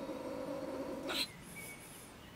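Stone marten (beech marten) scolding from its den in a woodpile: a drawn-out, harsh, rasping call that ends abruptly with a short sharp burst a little over a second in.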